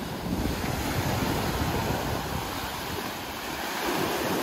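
Small sea waves breaking and washing up on a sandy beach: a steady rush of surf.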